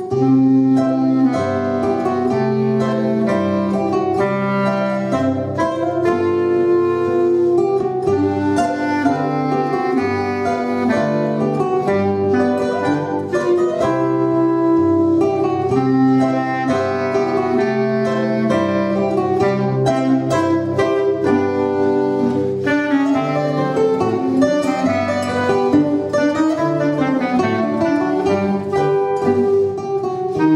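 A concert zither and a clarinet playing a lively folk instrumental together: the zither's plucked melody strings and accompaniment chords under the clarinet's held and moving melody notes.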